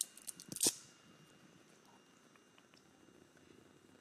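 Craft tools handled on a tabletop: a few light clicks and one sharper knock in the first second as the mini ink blending tool and ink pad are picked up and set down, then quiet room tone with faint ticks as the foam tool is dabbed onto the ink pad.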